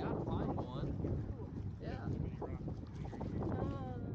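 Wind buffeting the camera microphone as a steady low rumble, with people's voices talking over it now and then.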